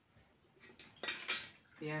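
A few hard knocks and scrapes of a stone pestle against a stone mortar, about a second in, followed by a voice starting near the end.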